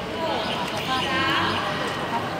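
Several people talking and calling out at once, with one high voice rising about a second in.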